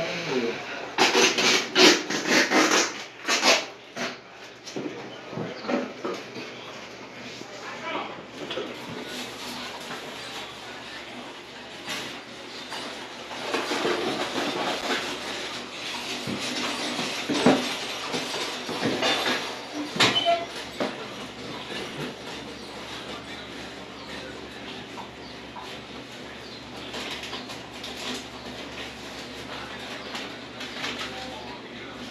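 Unpacking a Midea blender: cardboard box flaps, paper and plastic packing rustling and crackling as they are pulled out, loudest in a run of rustling a couple of seconds in, with a few sharp knocks of parts being handled later.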